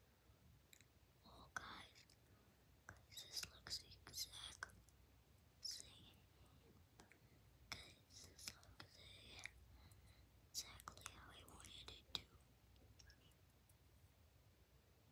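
A child whispering faintly in short breathy phrases, with a few small clicks.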